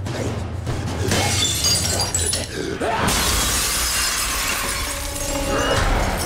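Glass shattering and crashing in a TV drama's fight-scene soundtrack, starting about a second in and at its loudest from about three seconds in, over the music score.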